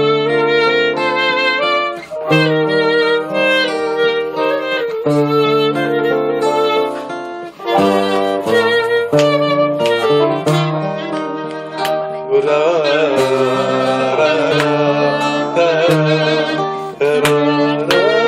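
Acoustic guitar playing a song's instrumental introduction, with held bass notes under a sustained melody line that wavers with vibrato about two-thirds of the way in.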